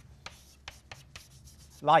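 Chalk writing on a blackboard: a quick run of short scratches and taps, about eight strokes, as letters are written.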